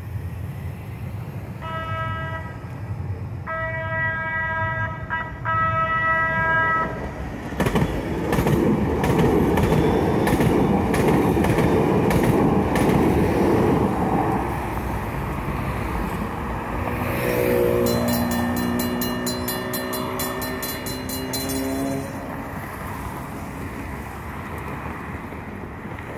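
San Diego MTS light-rail trolley sounding three horn blasts, then running through the grade crossing with loud rumble and wheel clatter. Near the end a whine from the trolley's motors rises slightly in pitch for a few seconds.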